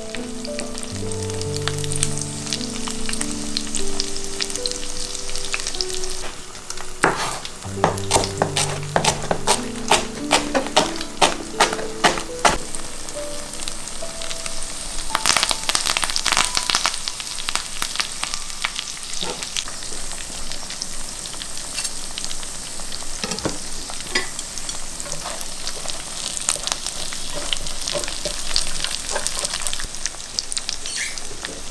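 Slices of tofu sizzling as they pan-fry in oil, a steady hiss broken by many sharp crackles, with a thick run of loud crackles about halfway through.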